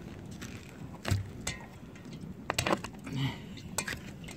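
A string of sharp clicks and knocks from a shed door's latch and metal hardware being worked as the door is opened, a few irregular strikes in the second half.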